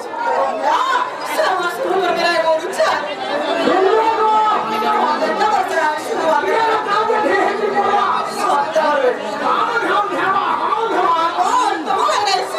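Several people talking at once, voices overlapping with no drumming.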